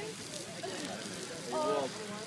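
Burning fishing boat crackling steadily, with people's voices over it and a short voiced sound near the end.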